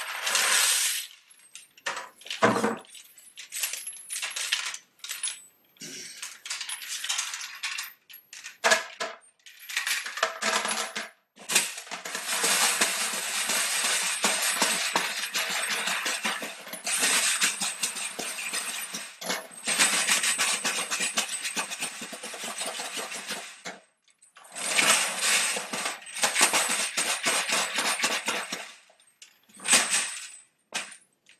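Brass cartridge cases rattling and clinking in a hard-plastic shell sorter tray shaken inside a five-gallon bucket, so that the smaller cases fall through its grooves. Scattered clinks come first, then about twelve seconds of continuous rattling, a short stop, and another spell of rattling near the end.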